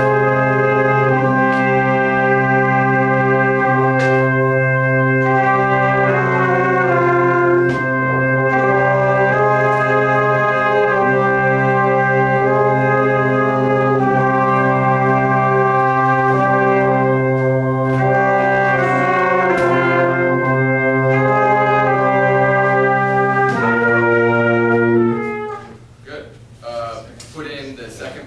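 Small brass ensemble playing a slow passage of sustained chords, likely only parts three and four, with the harmony shifting every second or two over a steady low note. The playing cuts off about a second before the end.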